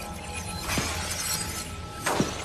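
A sound-design impact effect: one sudden burst with a quickly falling pitch, about three-quarters of a second in, over a steady, low background music drone.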